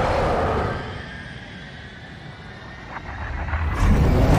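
Film fight-scene sound effects: a loud rushing whoosh at the start that dies down, then a heavy low rumble building near the end.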